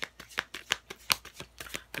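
A deck of oracle cards being shuffled by hand: a quick, irregular run of crisp card clicks and slaps, several a second.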